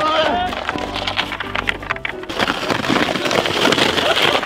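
Background music with a steady bass line and held notes, mixed with many short wooden clacks and knocks.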